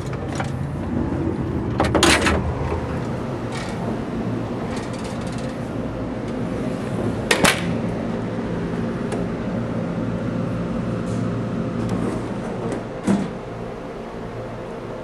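Steady low hum and rumble inside a JR East 113-series electric train car, with a few sharp clicks and knocks: one about two seconds in, a quick double click about halfway, and another near the end.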